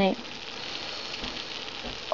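Steady, quiet sizzling hiss of food cooking on a hot stovetop.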